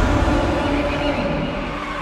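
Cinematic trailer sound design: a heavy low rumble with a held tone over it, easing off toward the end.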